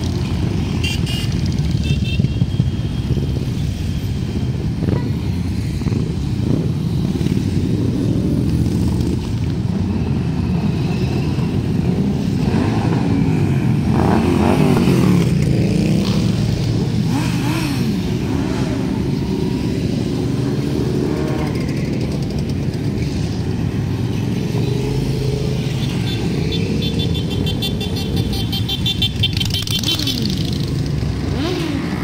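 A stream of motorcycles, cruisers and sport bikes, riding past one after another at low speed. Their engines run continuously, with the pitch rising and falling as individual bikes go by.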